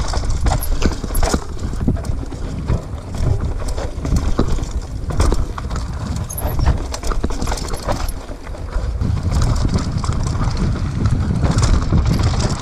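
Mountain bike riding fast down a rocky dirt trail: tyres on dirt and stone, with frequent knocks and clatter from the bike over rocks, and a steady rumble of wind on the bike-mounted camera's microphone.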